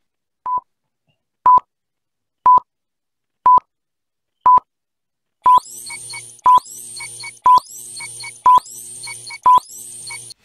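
Countdown beeps: a short, steady electronic beep once a second, ten in all. From about halfway, each beep comes with a rising whoosh, quick chirps and a low hum underneath.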